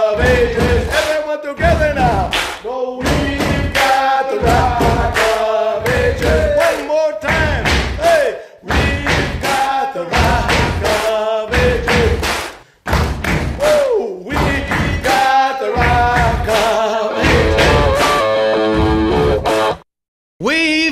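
A Purim rap song: a man's voice singing over a steady thumping beat.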